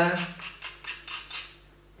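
A green plastic spoon clicking and scraping against a white ceramic bowl as it works a dry mix of sugar and ash, a run of quick light taps that dies away about a second and a half in.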